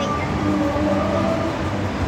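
A steady, continuous mechanical rumble with a few faint drawn-out tones over it.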